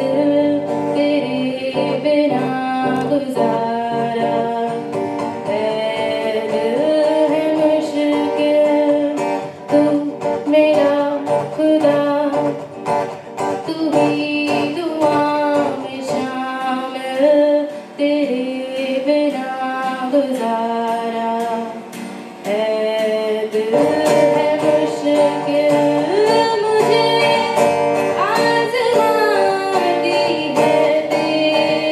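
A woman singing a Hindi song into a microphone, accompanied by an acoustic guitar played by a second performer. The guitar drops its lower notes for a few seconds past the middle before the fuller accompaniment returns.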